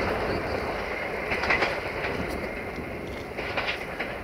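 Diesel railcar running away over jointed track, its running noise slowly fading, with its wheels clicking over the rail joints a few times.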